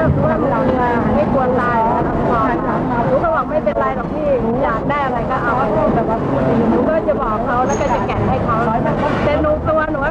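A woman speaking Thai, with steady low background noise under her voice.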